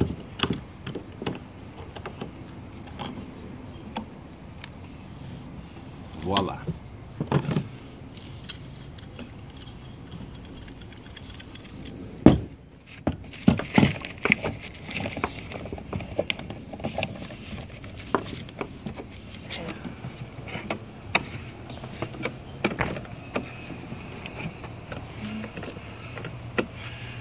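Metal screw clamps (C-clamps and bar clamps) being set and tightened on a freshly epoxied wooden lamination: irregular clicks, clinks and knocks of metal on metal and wood. The loudest is a sharp knock about twelve seconds in. A thin, steady high tone runs behind them.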